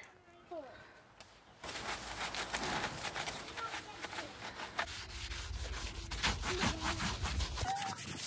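A Dishmatic soap-dispensing brush scrubbing a soapy plastic wheelie bin, in quick back-and-forth strokes. The scrubbing starts about a second and a half in.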